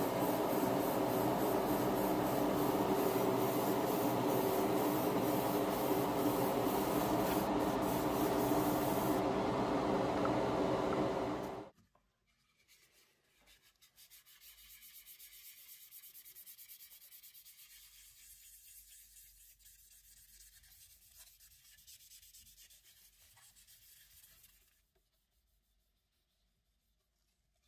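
Airbrush and its compressor running, a steady hum with a hiss of spraying black primer onto a plastic scale-model car body; it cuts off about twelve seconds in. After it comes faint rubbing of fine 3000-grit sandpaper on the primed plastic body.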